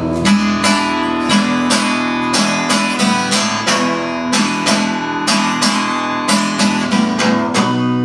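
Acoustic guitar strummed steadily, about three strums a second, in an instrumental passage without singing.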